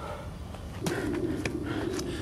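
A wild dove cooing, one low hooting call of about two seconds starting just under a second in, with a few sharp clicks over it.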